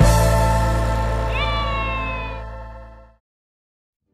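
Background music ending on a held chord that fades out over about three seconds, with a short high note that slides downward laid over it about a second and a half in; then silence.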